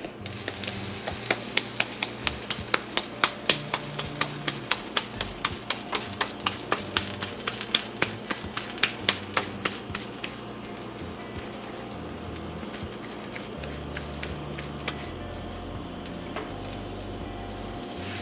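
Wet hands patting a filled ball of rice-flour pupusa dough flat between the palms, in quick slaps at about three a second that stop about ten seconds in. A low bass line of background music runs underneath.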